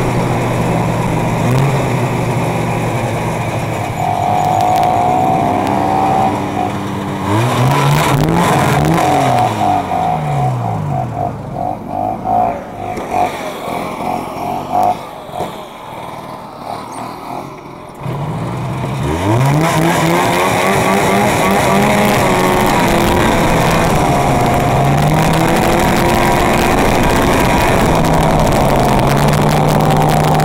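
Snowmobile engine running under throttle. Its pitch falls as it slows about seven seconds in and it drops to a quieter low run for several seconds, then revs up again about two-thirds of the way through and runs steadily.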